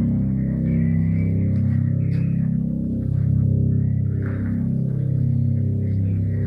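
Deep droning tones: several low pitches held together and shifting slowly every second or two, steady and loud throughout.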